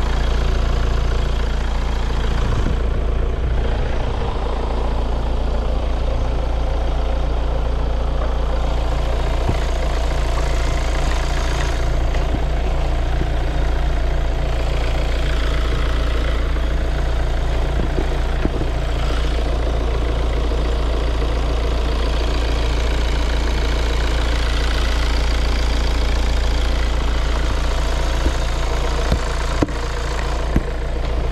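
Hyundai Tucson 2.0 CRDi four-cylinder diesel engine idling steadily, heard up close from the open engine bay.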